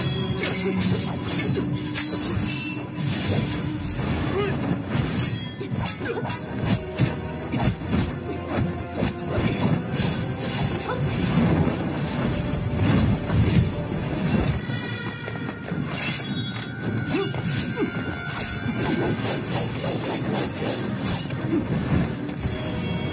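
Action film fight-scene soundtrack: music under a dense run of blows, hits and crashes.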